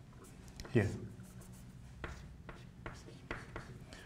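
Chalk on a blackboard: a quick run of short taps and scratches during writing, in the second half.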